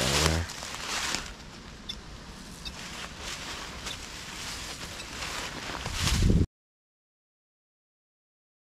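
Hand-held tree-marking paint gun squirting paint onto a tree trunk in short sprays, amid rustling of dry leaf litter underfoot. The sound cuts off abruptly to silence about six and a half seconds in.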